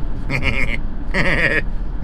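A man laughing in two drawn-out, wavering bursts of voice, over the steady low rumble of a minibus cabin on the move.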